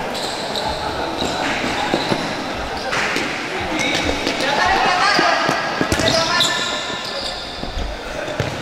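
Indoor futsal play: a futsal ball being kicked and knocking on the court, several sharp knocks, with players and bench calling out, loudest between about four and seven seconds.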